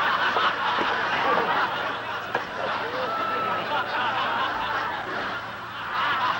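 Live audience laughing: a steady wash of many voices that eases off near the end.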